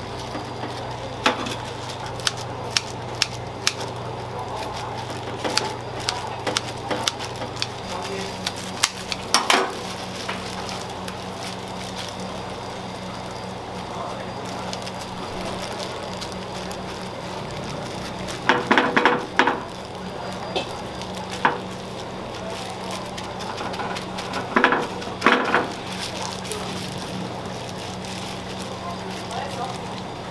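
Rice sizzling on a hot stone plate as it crisps into nurungji (scorched rice crust) under a roasted chicken, over a steady low hum. Scattered sharp clicks and knocks come through the first ten seconds.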